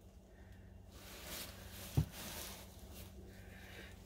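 Faint handling noise: a soft rustle and a single low knock about two seconds in, over a steady low hum.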